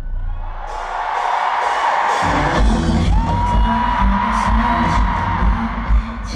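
Pop music played loud through a concert sound system, with the audience screaming. The deep beat drops out for the first two seconds, then comes back in heavily, and a long high held tone rides over it from about three seconds in.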